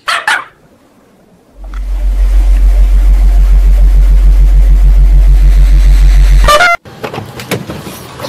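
A short blast right at the start. About a second and a half in comes a very loud, deep, distorted drone with a fast flutter, blown-out, bass-boosted meme audio. It cuts off suddenly about five seconds later.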